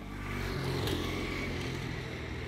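A motor vehicle passing in the street: its engine hum builds over the first half second, peaks about a second in, then slowly fades.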